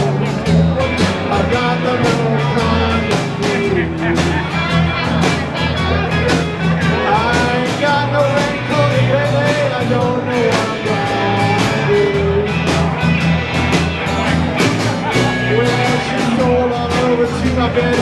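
A live blues band playing a steady groove on upright bass, electric and acoustic guitars and drums, with a pitched lead line bending up and down over it.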